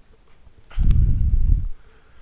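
A large plastic action figure, Studio Series 86 Grimlock, being set down and settled on a desk: a click, then about a second of low, dull thudding as it meets the desktop.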